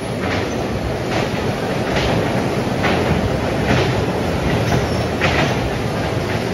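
Electric bumper cars running around a rink: a steady rolling rumble, with short, sharp rasps recurring roughly once a second.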